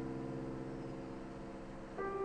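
Grand piano chord ringing on softly and slowly fading, with several notes in the lower-middle range sounding together; a new chord enters right at the end.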